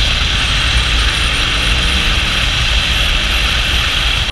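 Riding noise on a BMW R18 cruiser moving in traffic, picked up by a helmet-mounted camera: steady wind rush on the microphone over the low rumble of its 1,802 cc boxer twin.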